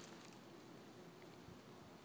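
Near silence: faint, steady background hiss in the woods.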